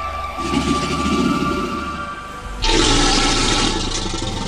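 Film sound effects over a sustained music drone: a surge of rushing noise about half a second in, fading by two seconds, then a louder rush that starts suddenly about two and a half seconds in and carries on.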